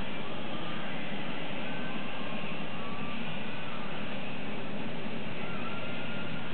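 Steady even background hiss, constant in level, with a few faint thin tones in the upper range and no clicks or other distinct events.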